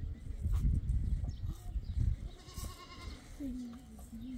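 Low rumbling noise in the first half, then a short pitched call and, near the end, a long wavering animal call, of the kind a goat makes.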